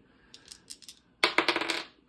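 A small black six-sided die rolled onto a tabletop: a few faint clicks, then a quick clatter about a second in as it tumbles and settles.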